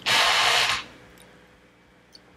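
A person's short, breathy burst of air close to the microphone, lasting under a second near the start, then quiet room tone.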